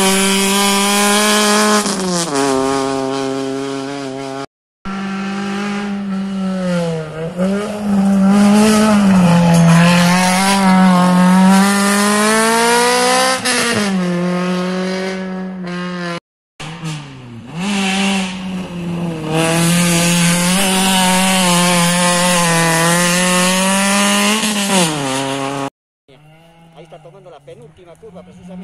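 Rally car engines running hard on a gravel stage, their pitch holding high, then dipping and climbing again with each gear change, over a hiss of gravel and tyre noise. The sound cuts off abruptly twice and starts again, and near the end drops to a faint background.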